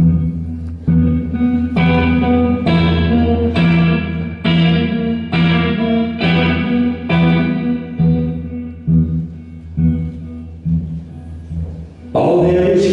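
Acoustic guitar strummed in a slow, even rhythm, about one chord strum a second, each chord ringing over a steady low note. The strums turn softer and duller after about eight seconds.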